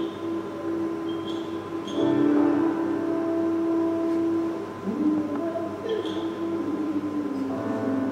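Free-improvised jazz from saxophone, viola and piano: long held tones layered together, with a sliding note about five seconds in and a few short bright accents on top.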